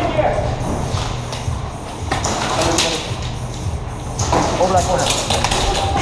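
Indistinct, muffled voices of players, with rustling, clicks and knocks of tactical gear and equipment as the wearer moves in close to a wall. The knocks come mostly in the second half.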